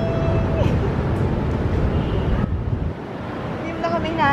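Steady low rumble of outdoor background noise, like distant traffic, with a drawn-out call fading out about half a second in and a voice starting near the end.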